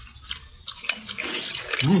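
Wet clicking and smacking mouth sounds of someone chewing a bite of cooked abalone, ending in a short hummed 'mm'.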